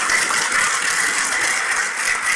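Audience applauding, a dense, steady clapping that eases slightly near the end.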